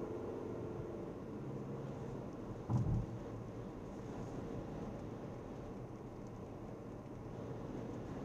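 Steady road and tyre noise of a car driving on a wet road, heard from inside the cabin, with a single short thump about three seconds in.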